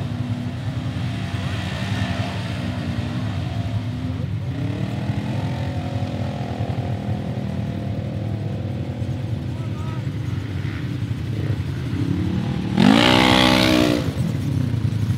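Side-by-side UTV engines running and revving as the machines drive in circles on loose dirt, with a rev that rises in pitch about four seconds in. About a second before the end, one UTV comes up close and its engine revs loudly with a sharply rising pitch.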